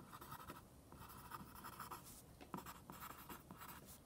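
Faint scratching of a pencil on lined notebook paper as a word is handwritten, in several short runs of strokes.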